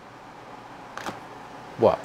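Quiet room tone with one faint click about a second in, then a man's voice starts near the end.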